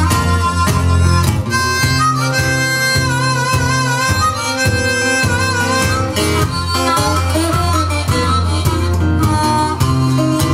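Harmonica played cupped against a vocal microphone, with sustained notes that bend and waver, over acoustic guitar accompaniment.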